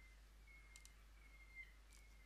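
Near silence: faint room tone with a faint high whine and a couple of faint mouse clicks.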